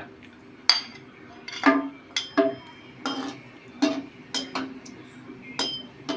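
Metal spatula clinking against a ceramic plate and a wok while candlenuts are scooped into the wok and stirred: a string of separate sharp clinks, about nine in six seconds, some with a short metallic ring.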